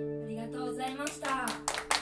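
A final acoustic guitar chord rings and fades, then the audience starts clapping about a second and a half in.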